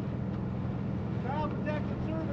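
A steady low hum runs throughout, and a man's voice speaks briefly in the second half.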